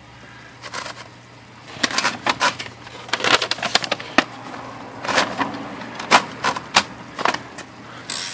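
IBM Model C electric typewriter's motor humming steadily while the machine is handled, with irregular clicks and rattles from the platen and paper mechanism as the typed sheet is taken out and a fresh sheet is fed in.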